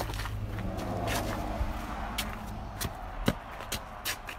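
Footsteps on snow-patched ground with a steady low rumble on the microphone, and a few sharp clicks in the last two seconds, the loudest about three seconds in.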